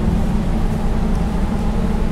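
A steady low rumble with a faint hiss above it, with no distinct events.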